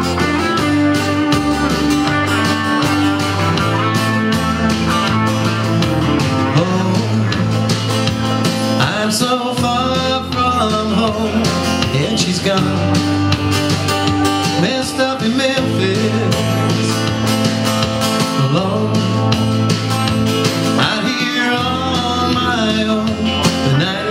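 Country song performed live: electric guitar over a steady beat and bass line, with a man singing in places.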